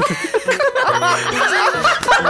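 People chuckling and laughing over background music with sustained notes.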